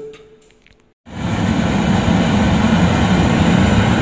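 Riello R40 G10 oil burner running after repair, firing an open flame into the air: a loud, steady noise of blower and flame that starts abruptly about a second in, after near silence.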